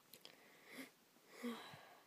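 Near silence with two faint, soft breaths, one a little before halfway and one about three quarters of the way in.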